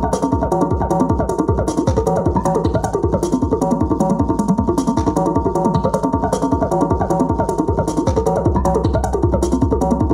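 Tribal tekno music: a fast, dense pattern of electronic percussion and short pitched hits at an even level, with the bass growing fuller near the end.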